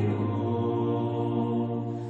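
Slow sung chant: voices holding long, steady notes over a low sustained tone, the chord shifting once early on.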